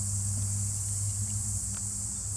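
A steady, high-pitched chorus of insects, over a low steady hum.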